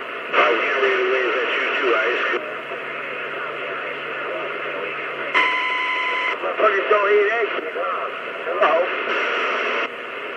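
CB radio receiver audio: garbled, band-limited voices of other operators over static hiss, with carriers keying in and out. A short steady electronic tone sounds about five and a half seconds in.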